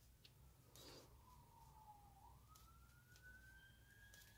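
Faint emergency-vehicle siren wailing, its pitch falling slowly, then rising about halfway through and holding steady.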